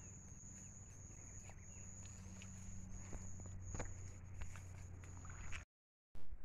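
Footsteps squelching and splashing through deep mud and muddy water, irregular soft knocks, over a steady high-pitched whine.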